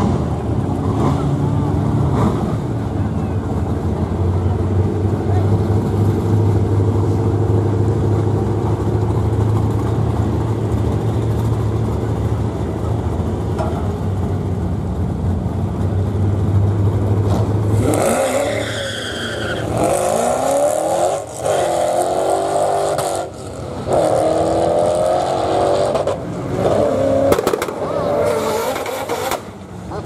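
Drag-racing car engines: a steady low idling drone for most of the first half. About 18 seconds in, an engine revs hard and accelerates away, its pitch climbing and falling back several times.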